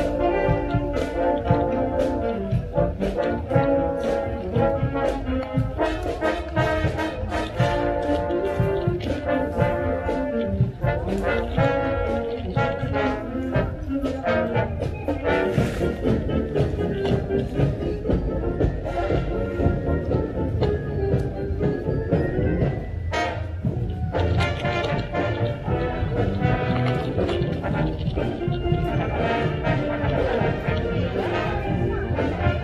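A high school marching band playing live on parade: brass section carrying the tune over a steady drum beat.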